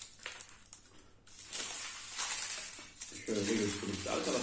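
Aluminium foil wrapper crinkling as it is peeled off a bar of white chocolate: a few light clicks at first, then a longer stretch of rustling from about a second and a half in.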